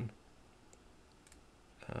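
A couple of faint, sparse computer mouse clicks against quiet room tone. A voice starts up again near the end.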